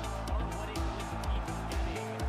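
Background music with a steady beat over a low, sustained bass line.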